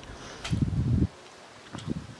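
A brief low rumble of wind buffeting the microphone, lasting about half a second from roughly half a second in, over faint rustling of hibiscus leaves.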